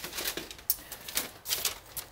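A run of irregular light clicks and taps, several a second, typical of a handheld phone being handled and carried while its holder moves about.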